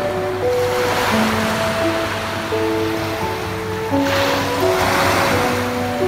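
Small waves washing onto a sandy beach, the surf swelling twice, about a second in and again about four and a half seconds in, under slow melodic music.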